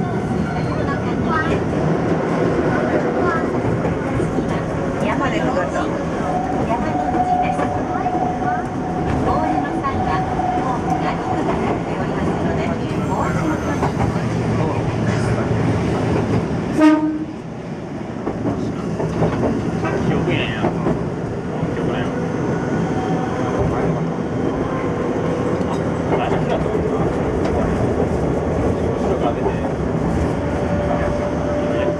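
Keifuku Mobo 600 tram running, with wheel-on-rail noise and a steady motor whine that rises near the end. There is a single sharp clank about halfway through.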